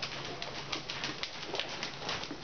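A horse trotting close by on soft sand arena footing: hoofbeats in a steady rhythm of about three a second.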